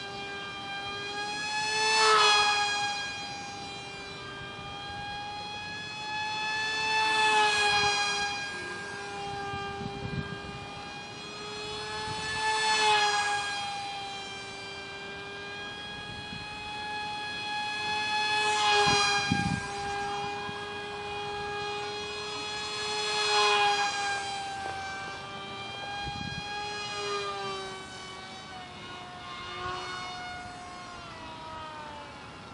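Tiny 8 mm electric motor driving a direct-drive prop on a micro foam delta wing RC plane: a steady high-pitched whine that swells much louder five times, about every five seconds, as the plane flies past close by.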